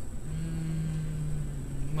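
A man humming a low, steady "mmm" for almost two seconds, dipping slightly in pitch near the end.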